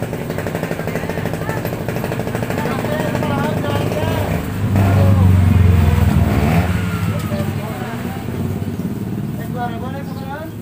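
A small motorcycle engine running close by, swelling louder about five seconds in and then easing off, under women's chatter.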